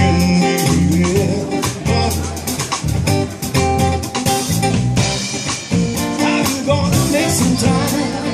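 Live band music: a guitar, an electric bass and a drum kit playing a steady groove together, with drum hits coming through clearly.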